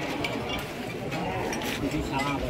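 Indistinct background voices of several people talking, with no clear speaker in front.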